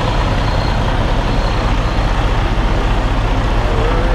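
Semi truck's diesel engine running under a steady rushing noise as the tractor-trailer backs slowly, heard from a microphone mounted outside the cab.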